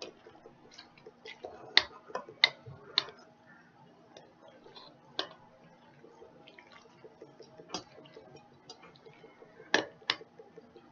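A utensil knocking and scraping against a bowl as a thick macaroni, cheese and gravy mixture is stirred slowly: irregular clicks, several loud ones in the first three seconds and another near the end, over a faint steady hum.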